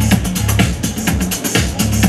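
Electronic dance music from a DJ set played over a club sound system, with a steady beat and heavy bass.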